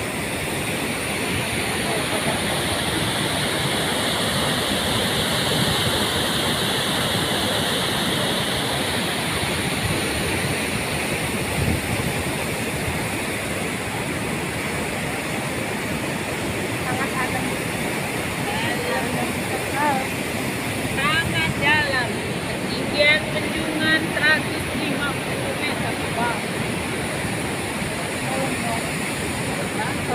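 River floodwater rushing steadily through a dam weir, a continuous even rush of water from a river in flood.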